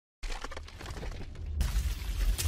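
Logo-intro sound effect of a concrete wall cracking and crumbling: many small crackles over a deep rumble, starting a moment in, then a louder crash of breaking stone about one and a half seconds in.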